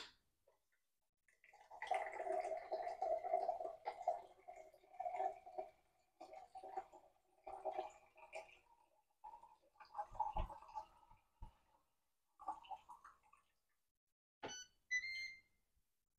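Ninja Thirsti drink system dispensing sparkling water into a glass: its pump running and the carbonated water pouring and fizzing, faint and uneven, starting about a second and a half in and stopping around thirteen seconds. Two short high ringing tones follow near the end.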